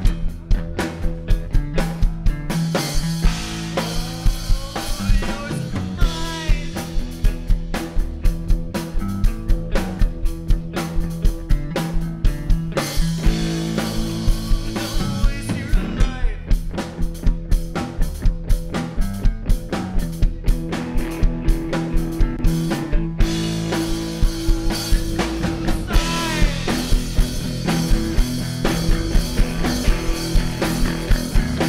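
Live rock band playing: distorted electric guitar, bass guitar and drum kit keeping a steady beat, with a sung lead vocal coming in at times.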